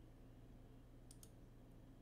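Near silence over a faint steady low hum, with two faint computer mouse-button clicks close together a little over a second in.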